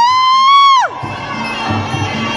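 A spectator's long, high-pitched yell from the crowd watching the fight, rising, held for about a second, then falling away, over background music.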